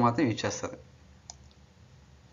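A man's voice finishing a phrase in the first moments, then quiet room tone with a single faint click about a second and a half in.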